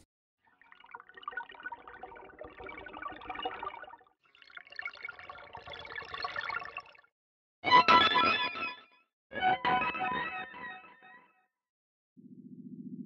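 Atonal electric-guitar texture samples from Spitfire's Ambient Guitars library, "Anemone Drops" preset, played from a keyboard: scattered plucky, effected notes in four phrases. The first two are quieter; the last two are louder, with sharp starts, and die away before the end.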